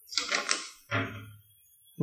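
Sheets of paper rustling and crackling as they are handled, in two short bursts: a crisp one just after the start and a shorter one about a second in.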